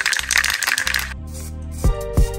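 Aerosol spray paint can being shaken to mix the paint before spraying, its mixing ball rattling rapidly inside; the rattling stops abruptly about a second in.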